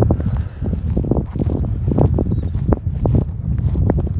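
Footsteps of a person walking through dry, mown grass stubble, irregular soft steps a few per second, over a low rumble of wind on the microphone.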